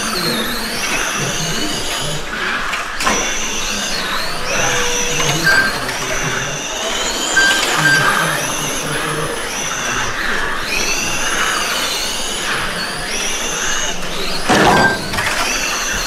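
Several 1/12-scale electric RC pan cars' motors whining high and overlapping, each rising and falling in pitch as the cars accelerate down the straights and slow for the corners.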